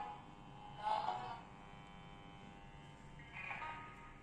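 Faint music played through a small speaker from an audio signal carried on an LED's light to a light receiver; it swells briefly about a second in and again near the end.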